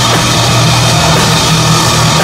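Black metal band playing live: distorted guitars and a drum kit in a loud, dense, unbroken wall of sound.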